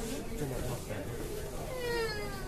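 People's voices talking, with one high voice gliding down in pitch near the end.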